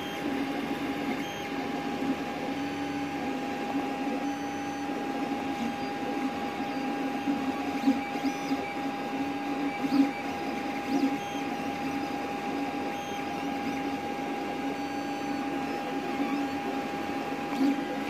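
Creality CR-X dual-extruder 3D printer printing: its motors whir in shifting pitches as the print head moves, over a steady high tone.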